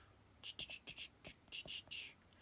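A quick, irregular run of about a dozen faint, light clicks beginning about half a second in: fingertip taps on an iPhone's glass touchscreen.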